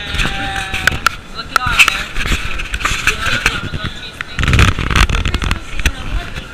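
Indistinct voices and chatter with scattered sharp clicks, and a louder rough, low rumbling burst about four and a half seconds in, lasting about a second.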